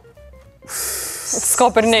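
A person's loud, breathy exhale or snort lasting under a second, followed by a man speaking.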